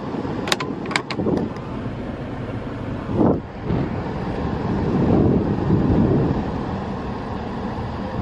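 Steady low rumble inside a car's cabin, with the engine running. A few light clicks come in the first second and a half.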